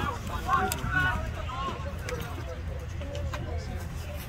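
Scattered shouts and calls from players and onlookers at a junior rugby league match, strongest in the first two seconds and thinner after, over a low steady rumble.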